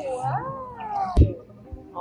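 A baby's high-pitched wail, its pitch sliding up and down for about a second, ending in a sharp knock.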